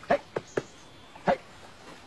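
A dog giving four short, sharp barks: three close together in the first half-second and one more about a second later.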